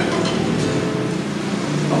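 Acoustic guitar and electric bass playing a few loose, unrhythmic notes before a song is counted in, with a low note held near the end.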